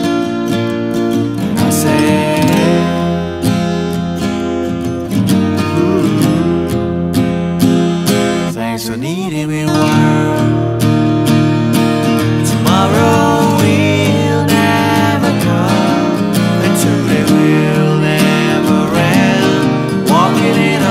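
Band music: strummed acoustic guitar with a voice singing over it, the voice sliding in pitch at times.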